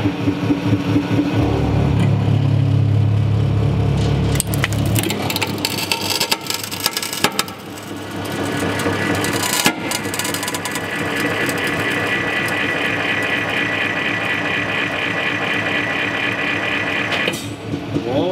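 200-ton hydraulic press running, its pump droning as the ram crushes a loudspeaker's stamped steel frame and magnet, with a heavy low hum early on the stroke. Sharp cracks and creaks of the metal frame giving way come around the middle, then a steady higher drone as the press holds the load.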